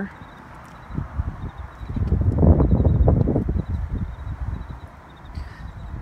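A gust of wind buffeting the phone's microphone: a low, crackling rumble that builds about a second in, is loudest around the middle and fades away before the end.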